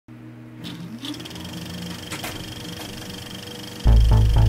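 Electronic music intro: a steady low synth drone with a rising sweep about a second in, then a loud beat with heavy bass cuts in just before the end.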